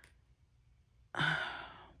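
A woman's audible sigh about a second in: a breathy exhale that fades away.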